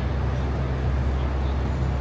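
Steady city street noise: a low rumble of traffic and engines with a constant low hum underneath.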